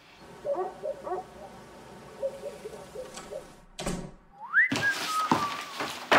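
A thud about four seconds in, then a loud whistle that swoops up and falls back in a few steps, typical of someone whistling to announce himself as he comes in.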